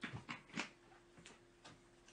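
A few short, soft knocks and rustles of objects being handled and moved, over a faint steady hum.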